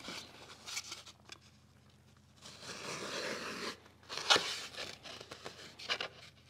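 A marking gauge drawn along the edge of a spalted beech board, scoring a line: a scratchy scrape lasting just over a second near the middle. About four seconds in comes one sharp knock, as the tool or board is set down on the bench.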